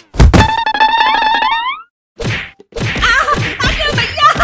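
Cartoon slapstick beating sound effects: a loud whack, then a rapid rattling run with a tone sliding upward at its end. After a short gap comes another hit, followed by wavering cries.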